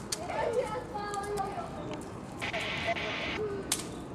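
Indistinct voices in the background, pitched and broken up like distant talk. About two and a half seconds in there is a hiss lasting about a second, and there is a sharp click near the end.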